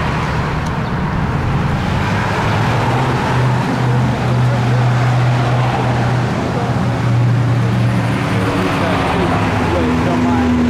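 Road traffic passing close by on a busy street, a steady rushing noise, with a heavy vehicle's engine hum swelling through the middle.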